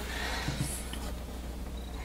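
Steady low hum with a faint, brief handling sound about half a second in, as a soap loaf is moved on a wooden wire soap cutter.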